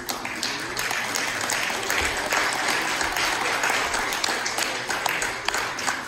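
A congregation applauding: dense, steady hand-clapping that thins out near the end.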